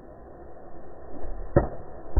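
An arrow shot from a longbow strikes with a single sharp knock about a second and a half in, over faint low background noise.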